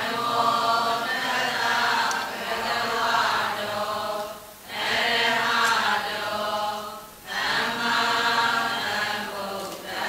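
Buddhist devotional chanting in long, drawn-out phrases, with short breaks about four and a half and seven seconds in.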